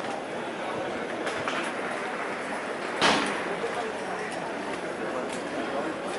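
Outdoor ambience of a public courtyard: indistinct voices of people around, over a steady background hiss. A single sharp knock about halfway through stands out as the loudest sound.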